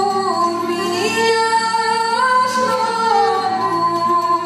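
Live Moldavian Csángó folk music: a woman sings long held, gliding notes over fiddle, koboz and drum.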